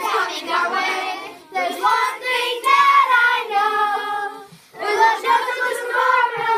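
A group of children singing together in sung phrases, broken by two short pauses.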